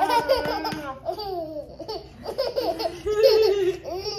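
A baby laughing while being dangled upside down and kissed, in a string of short pulses, with adult laughter mixed in.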